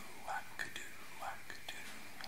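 Soft whispering: a few faint, short breathy syllables with small mouth clicks in between.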